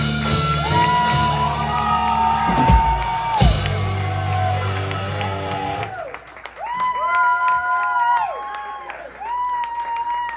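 Live rock band with electric guitar, bass and drums playing under several singers, with two heavy hits about three seconds in. About six seconds in the band drops out, leaving the singers holding long notes in harmony.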